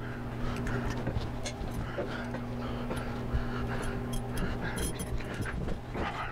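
Hands working a wire and pull string through a metal motorcycle handlebar tube: small scattered clicks, taps and rustles as the bar and wire are handled, over a steady low hum.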